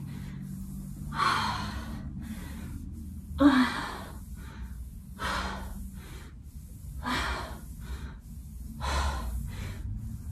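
A woman breathing hard under exertion: five forceful, breathy exhales or gasps, about one every two seconds.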